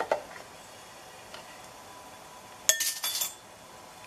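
Stainless steel saucepan clinking as the plastic accordion tube knocks against it: a sharp click at the start, then a brighter clink with a short metallic ring about two-thirds of the way in, followed by a few smaller rattles.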